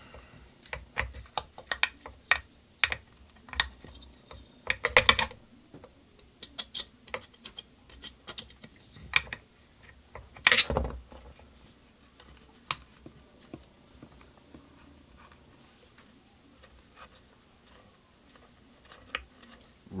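Open-end wrench working a bolt at the base of a two-stage vacuum pump: scattered metal clicks and taps, with a cluster of them about five seconds in and a louder clatter about ten and a half seconds in. The clicks thin out to a few isolated ticks in the second half.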